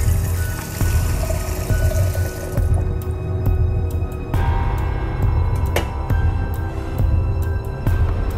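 Background music, with water from a kitchen tap running into a mug during the first two to three seconds.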